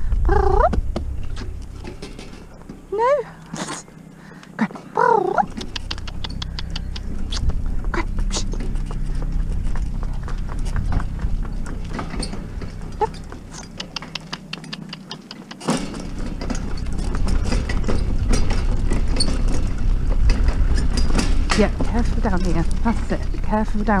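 A pony-drawn two-wheeled cart travelling over a rough gravel track: the wheels and hooves give a steady low rumble with scattered crunches and clicks, quieter for a moment twice. A few short wordless vocal sounds come in the first five seconds.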